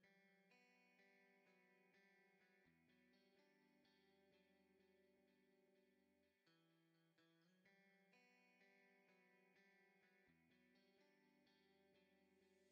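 Near silence: very faint background music with plucked notes over a low bass line.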